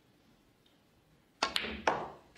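Snooker cue tip striking the cue ball, followed by sharp clicks of snooker balls knocking together: three hard clicks in quick succession about one and a half seconds in.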